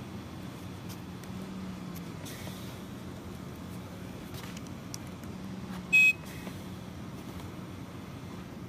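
One short, loud electronic beep from a ReVel transport ventilator about six seconds in, over a steady low hum.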